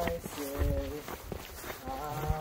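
A man laughs, then a voice holds a short sung note for about half a second. Low thumps sound underneath.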